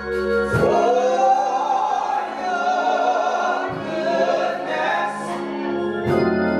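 Three gospel vocalists, two women and a man, singing in harmony through microphones, holding long notes, over a steady sustained organ backing.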